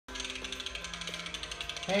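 Rapid, even ticking, roughly fifteen ticks a second, with a few held electronic notes underneath, playing from a tablet app's audio.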